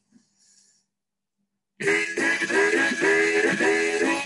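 Near silence, then about two seconds in a harmonica starts playing a boogie riff: repeated rhythmic chords, about two or three a second.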